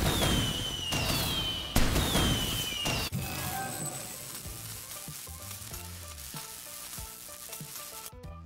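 Fireworks sound effect: bangs with crackling and three falling whistles over the first three seconds. Intro music follows at a lower level.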